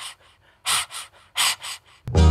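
Rhythmic breathy panting, a vocal break in a 1970s Pakistani film song: four short puffs of breath in two pairs, with quiet between them.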